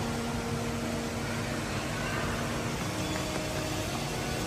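Steady background noise of a large indoor space, an even hiss with a low rumble, and faint held tones in the first couple of seconds.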